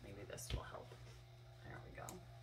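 A matted art print being handled and lifted up, with a dull knock about half a second in, under faint murmuring and a steady low hum.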